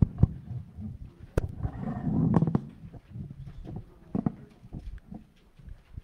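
A room of people getting to their feet: shuffling, scattered footsteps and irregular knocks and thumps of chairs and hymnals, with a denser rumble of movement about two seconds in.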